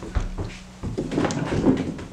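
A handful of irregular clacks and knocks from a manual typewriter being handled, busiest in the second half, with a low held note dying away in the first second.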